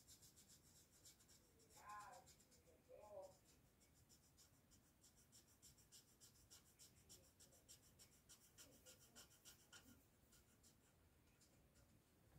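Faint, quick scratching of a Copic marker's tip colouring on a wooden skateboard deck, several short strokes a second.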